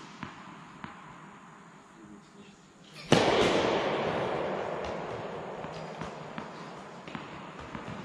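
A tennis ball bouncing on the court a few times, then about three seconds in spectators break into applause that slowly fades.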